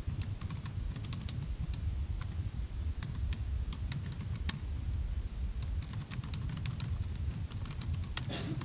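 Typing on a computer keyboard: quick runs of keystrokes broken by short pauses, over a steady low hum.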